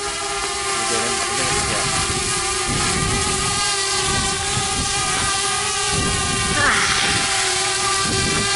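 DJI Mavic Air quadcopter hovering overhead, its propellers giving a steady multi-toned whine. From about three seconds in, wind gusts rumble on the microphone, and a short vocal "ah" comes near the end.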